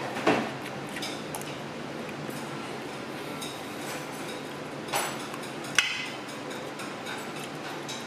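A few short clinks and knocks of tableware, chopsticks against plastic plates and bowls, over a steady room hum. One comes about a quarter second in and two more come around five and six seconds in, the last the sharpest.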